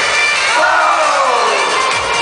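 Live pop music at an arena concert, heard from the audience, with the crowd cheering over it. A sliding tone falls in pitch twice.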